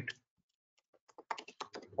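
Typing on a computer keyboard: a quick run of about eight keystrokes starting about a second in.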